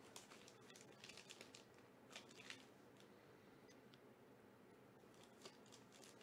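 Faint crinkling and crackling of a black foil card pouch being worked open by hand. Scattered small crackles come mostly in the first half, with one more near the end.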